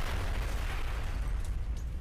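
Explosion sound effect: a long, deep rumble that keeps up at nearly the same loudness, the sustained tail of a boom that struck just before.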